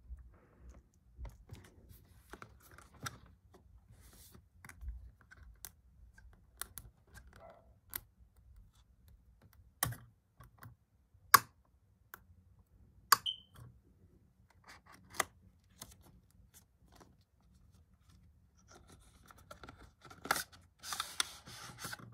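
Handling and opening the cardboard box of an Apple iPhone case: scattered light taps and clicks of cardboard against the table and fingers, with a few sharper knocks around the middle. Near the end there is scraping and tearing of paper as the box is opened.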